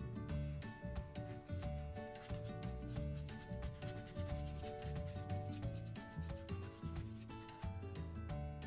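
A paintbrush scrubbing paint across a painting board, a rough rubbing sound, over background music with steady notes.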